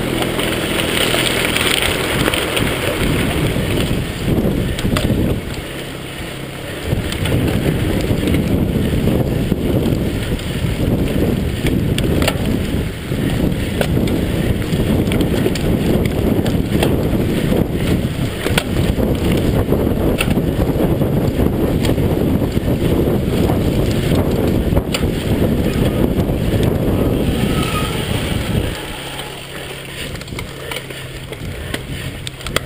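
Wind buffeting the microphone over the rush of mountain-bike tyres and the rattle of the bike, riding fast on tarmac and then on a bumpy dirt track, with frequent sharp knocks from the frame over bumps.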